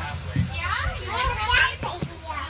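People talking, with a high-pitched child's voice among them, over a steady low hum.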